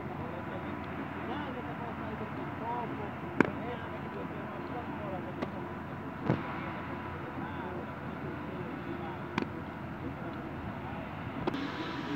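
A baseball smacking into a leather glove three times, about three seconds apart, in a game of catch, over steady outdoor background noise.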